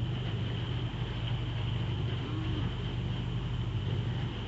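Outboard motor of a following boat running steadily, a low even drone.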